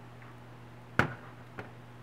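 A ceramic bowl set down on a stainless steel countertop: one sharp clack about a second in, then a lighter tick.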